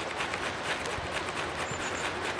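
Ferrocerium (ferro) rod scraped again and again with a striker in rapid short strokes, several a second, throwing sparks onto crumbled cedar firestarter cake.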